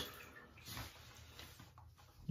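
Near quiet in a small bathroom: faint soft handling sounds, with one small rustle a little under a second in, as swim goggles are picked up and pulled on.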